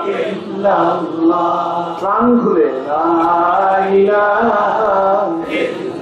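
A man's voice chanting a melodic religious recitation, in long held notes that glide up and down in phrases with short pauses for breath.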